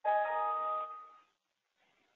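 A computer's notification chime: several notes sounding together, starting suddenly, holding for under a second and then fading out.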